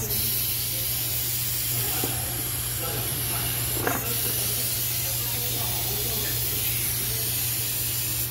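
Compressed air hissing steadily through a GISON GP-SA20-60 pneumatic vacuum suction lifter as its tip holds and lifts small loads, over a steady low hum. A brief knock about four seconds in.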